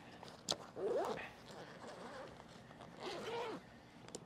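A click, then a camera bag's zipper pulled open in two rasping strokes, about a second in and about three seconds in.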